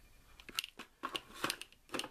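Hands handling a clear plastic box of sandpaper sheets and a wrapped packet: a few short, crisp clicks and crinkling rustles spread through the moment.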